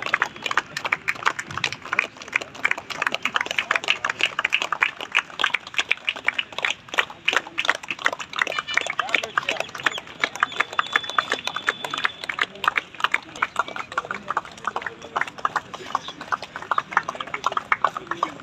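Many people clapping: a dense, irregular patter of hand claps that goes on steadily.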